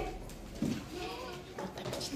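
Faint speech: quiet voices in a classroom, with no other distinct sound.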